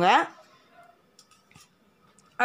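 A woman's voice ends a word, then a few faint light clicks of stainless steel plates being handled and set down on a cloth-covered surface.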